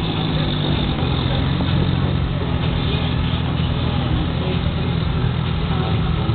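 Toyota Chaser's 3-litre engine idling steadily, with a constant low rumble.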